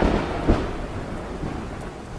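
Thunderstorm sound: a steady rain-like hiss with a low rumble of thunder that swells about half a second in.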